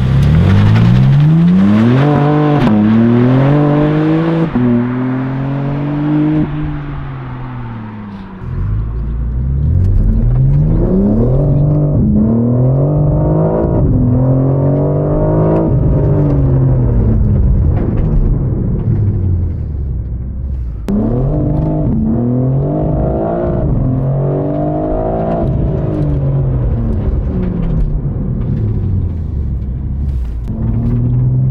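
BMW M4 CSL's twin-turbo 3.0-litre S58 straight-six accelerating hard in several pulls. In each pull the pitch climbs and drops sharply at every upshift, then falls away as the car slows. For most of it the engine is heard from inside the cabin.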